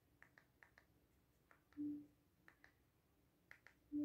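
Near silence broken by a few faint, sharp clicks, a quick run of them near the start and a few more later, and a brief low hum about two seconds in.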